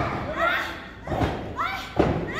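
Heavy thuds on a wrestling ring mat, three in two seconds (at the start, just past the middle and at the end), as bodies struggle in a hold on the canvas, with high-pitched shouts in between.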